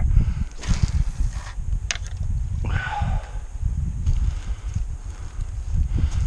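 A cast with a fishing rod and reel: a brief swish about half a second in, a sharp click just before two seconds, and a short rasp about a second later. A low rumble on the microphone runs underneath.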